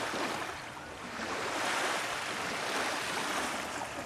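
Small waves washing onto a Lake Michigan sand beach, a soft, even surf hiss that swells about a second in and eases off near the end.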